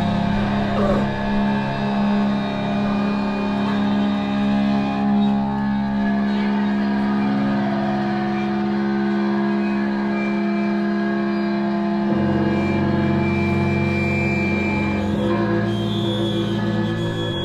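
A live metal band's electric guitars and bass hold long droning notes through their amplifiers with no drumming, shifting to a lower note about twelve seconds in; a thin high tone rings over them for a few seconds near the end.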